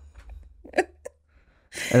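A few short, stifled bursts of laughter, breathy snorts held back behind hands, in the first second, then a lull before a voice starts speaking near the end.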